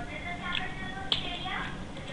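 Two sharp computer mouse clicks, the second and louder one about a second in, as the clone stamp brush is applied, over faint background voices and music.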